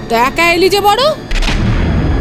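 A voice speaking briefly. About one and a half seconds in comes a sudden deep boom with a lingering rumble: a dramatic sound-effect hit laid under the reaction shots.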